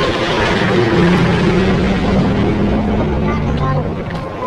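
Indistinct voices over loud, steady background noise with a low hum.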